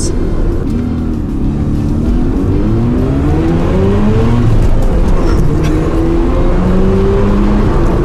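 Mazda RX-7 FD's twin-rotor rotary engine (13B-REW) under full acceleration, heard from inside the cabin. Its revs climb steadily, drop at an upshift about halfway, then climb again as the sequential twin turbos come on boost.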